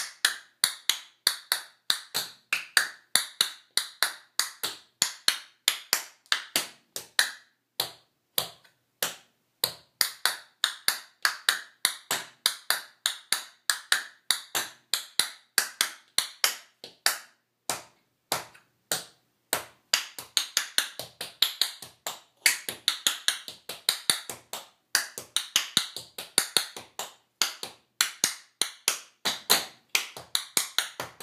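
Tap shoes striking a tile floor in a tap-dance combination: quick runs of sharp, rhythmic taps, several a second, broken by short pauses.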